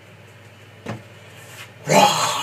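Quiet room background with a low steady hum, a single short knock about a second in, and a man's loud yell that starts right at the end.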